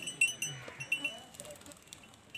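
Short, high, clear pings like a small bell, a dozen or so at the same pitch in quick irregular succession, with faint voices underneath.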